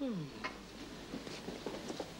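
A woman's voice trailing off in a falling tone at the very start, followed by faint rustling and small light clinks of handling.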